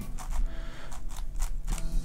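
DaYan NeZha 5M strong-magnet 5x5 speedcube being turned by hand: a quick, uneven run of clicks from the layer turns.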